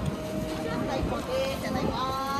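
Indistinct voices and a steady held musical tone over a low rumble of wind on the microphone.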